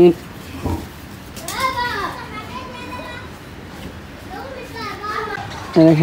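Children's voices calling and chattering, with rising and falling calls about a second and a half in and again near the end.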